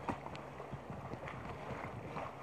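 Paddles and river water knocking and splashing irregularly against an inflatable raft, a scatter of small knocks over a soft water hiss.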